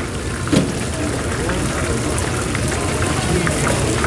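Battered fritters deep-frying in a wide pan of hot oil: a steady sizzle with scattered crackling pops, over background voices.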